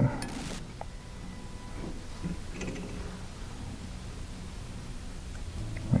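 Faint handling noises from fly tying at the vise: soft rustles and a small click about a second in, over quiet room tone.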